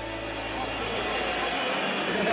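A live band's final chord dies away over about a second and a half while the audience applauds and cheers, the applause swelling slightly.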